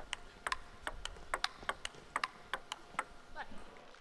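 Table tennis rally: the plastic ball clicking off the bats and the table in a quick, irregular run of sharp ticks, two to four a second.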